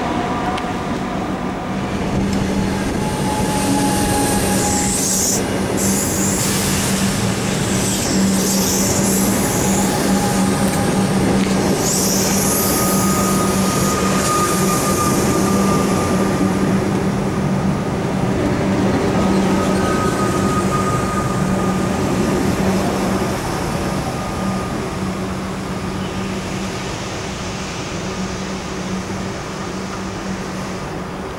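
Comeng electric suburban train running past along the platform: a steady electrical hum under wheel and rail noise, with patches of hiss and brief thin wheel squeals in the first half. The hum stops after about 23 seconds, and the noise fades over the last few seconds as the train moves away.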